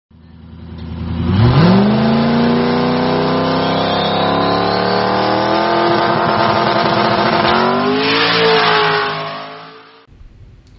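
A car engine revving hard: it fades in, its pitch sweeps up sharply about a second and a half in, then holds high and climbs slowly. It climbs once more near the end and then fades away.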